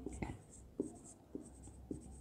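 Marker pen writing on a whiteboard: a series of short, faint squeaks and scrapes, one for each stroke of the letters.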